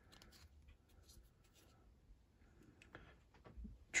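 Faint handling of a stack of baseball cards in the hands, with light rustling and a few soft clicks as the cards are squared up and thumbed, a little more active near the end.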